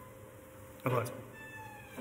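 A man's short hesitation sound about a second in, brief and falling in pitch, over low room tone.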